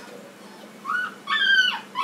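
Airedale terrier puppy whining: a short high whine about a second in, then a longer one that falls slightly in pitch.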